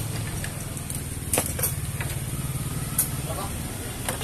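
A steady low mechanical hum with a few short, sharp clicks or knocks, the loudest about three seconds in.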